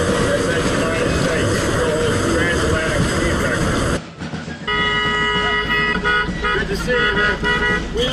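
Traffic noise and indistinct voices, then, after an abrupt cut about four seconds in, a vehicle horn sounding several steady tones together, held for several seconds with a couple of short breaks.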